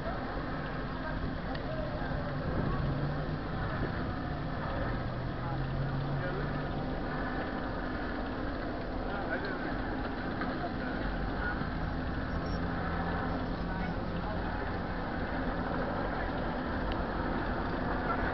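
Steady street noise of a large group bicycle ride, with the indistinct chatter of many riders and a low vehicle hum under it.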